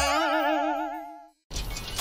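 Cartoon comedy sound effect: a wobbling, boing-like tone that wavers up and down in pitch and fades out over about a second. After a brief gap, upbeat music starts near the end.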